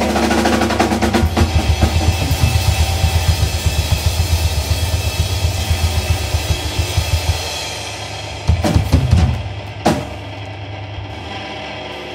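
Live rock band ending a song: rapid drum rolls and cymbal crashes on a Tama drum kit over sustained guitar and bass. After about seven seconds it thins out to a few last drum hits, then the instruments ring out.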